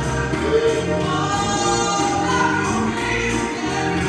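Two women singing a gospel song together with live instrumental accompaniment.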